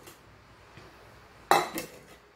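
A round cake pan set down on a granite countertop: a sudden metallic clatter about one and a half seconds in, followed by a second, smaller knock.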